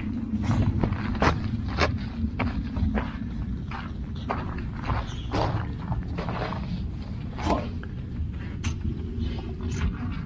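Footsteps crunching on desert gravel, irregular, about two a second, over a steady low rumble of wind on the microphone.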